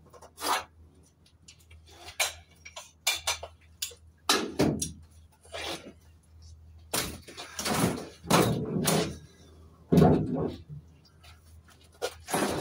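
A bicycle knocking and rattling as it is handled and lifted into the back of a metal van: a string of sharp knocks and clanks, some in quick runs, over a low steady hum.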